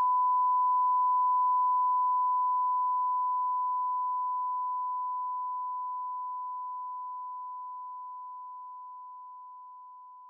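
A 1 kHz line-up test tone of the kind played with broadcast colour bars: one pure, steady beep that holds level and then fades slowly from about a second and a half in.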